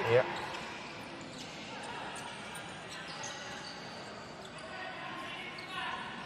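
Futsal being played on an indoor court: a steady hall murmur with the ball striking the hard floor and brief, faint, high shoe squeaks on the court surface.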